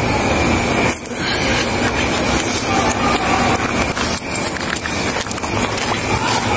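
Steady rushing noise on a police body camera's microphone as the wearer moves, with a few brief knocks about a second in and again past the middle.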